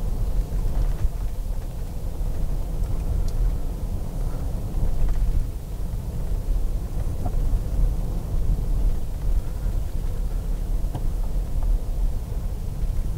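Steady low rumble of car engine and tyre noise heard from inside the cabin while driving slowly on a paved road.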